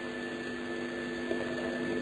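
A steady background hum with hiss, holding a few constant pitches, in a pause in the speech.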